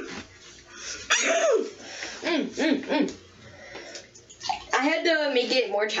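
A child's wordless vocal sounds, sliding up and down in pitch in a few short bouts, with hissing noise between them.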